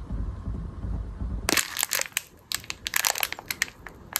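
Clear plastic bag crinkling and crackling as it is handled, a run of sharp irregular crackles starting about a second and a half in, after a low rumble.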